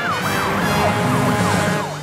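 Cartoon police car siren sounding as a quick series of falling sweeps, about three a second, over background music.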